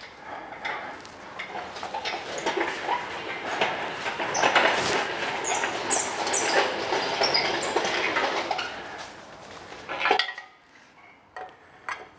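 An engine crane and its lifting chains clanking and rattling irregularly while a heavy engine on a wooden pallet hangs from it and is moved. The clatter is loudest midway and dies down near the end.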